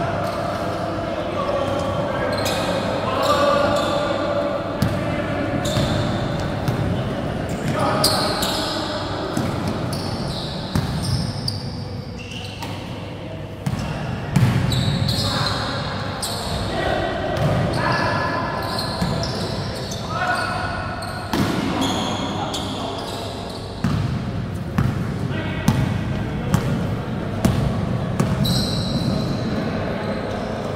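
Basketball being bounced and played on a hard indoor court, with repeated sharp thuds of the ball, short high sneaker squeaks and players' indistinct voices, all echoing in a large gym hall.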